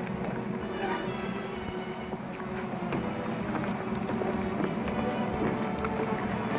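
Background film music from an old soundtrack, with several notes held at once and a steady pulse.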